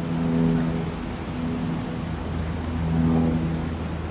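A low engine-like hum with steady pitched tones that swell and fade about three times, over a constant rushing noise.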